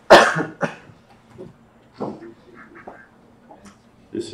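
A loud, sudden cough right at the start, followed at once by a shorter second one. A fainter cough comes about two seconds in, with quiet room noise between.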